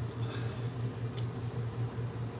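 Steady low mechanical hum with a faint single click just over a second in.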